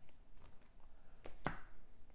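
Bagged comic books being lifted off and set onto a display stand: a few light taps and clicks of plastic and card, the sharpest about one and a half seconds in.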